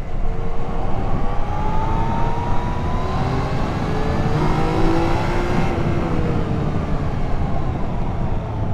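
Yamaha XSR900's inline three-cylinder engine running under way, its pitch rising gradually over the first few seconds as the bike accelerates, over a steady rush of wind and road noise.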